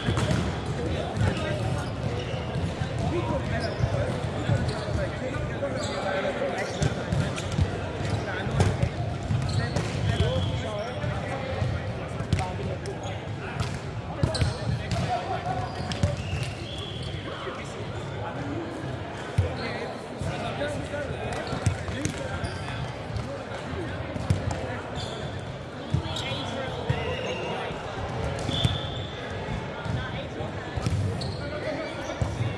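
Indoor volleyball being played: the ball is struck again and again by players' forearms and hands, with brief squeaks of sneakers on the hardwood court. Players' voices carry and echo in the large hall throughout.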